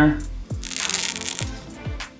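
The paper backing liner being peeled off an adhesive Command strip: a short papery tearing sound lasting under a second, about halfway through. Background music with soft low drum beats runs underneath.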